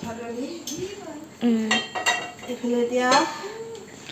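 Metal pots and kitchen utensils clinking and knocking, a few separate hits, with a voice calling out in between.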